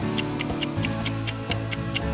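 Countdown-timer ticking sound effect, about four sharp ticks a second, over background music.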